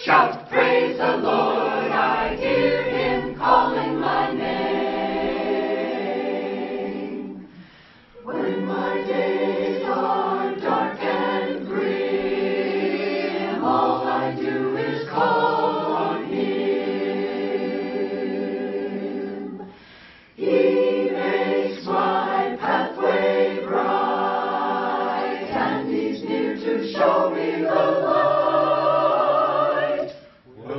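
Church choir of men and women singing, in long held phrases with two brief pauses, about eight and about twenty seconds in.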